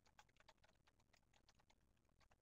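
Very faint, irregular clicking of typing on a computer keyboard, close to silence.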